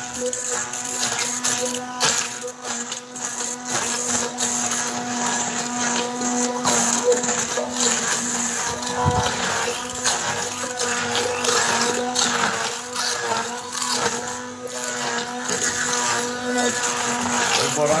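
Hand-held immersion blender running steadily in a stainless steel bowl, puréeing roasted tomatoes into sauce, with a steady motor hum. There is one short knock about nine seconds in.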